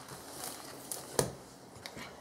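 Faint handling sounds of a hardcover picture book being moved on a table, with one sharp tap a little past a second in and a lighter one near the end.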